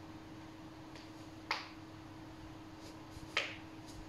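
Two sharp clicks about two seconds apart, with a few fainter ticks around them, over a steady low hum.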